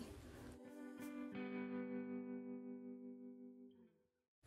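Faint music: one held chord that rings on and fades away shortly before the end, after a faint hiss and a couple of soft clicks.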